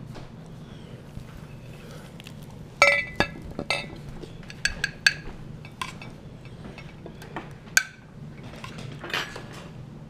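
Dishes and utensils clinking and knocking as food is handled: a run of sharp clinks, the loudest about three seconds in, with scattered single knocks after, over a steady low hum.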